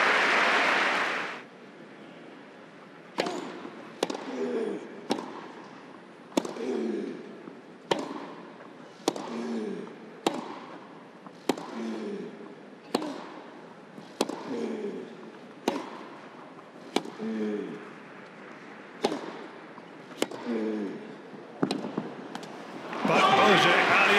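A long tennis rally on grass: sharp racket strikes on the ball about every second and a quarter, many of them with a short grunt from the player hitting. Applause fades away in the first second and a half and breaks out again near the end as the point is won.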